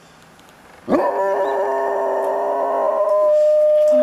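A golden retriever howling: after a moment of quiet, one long howl rises in about a second in and then holds steady.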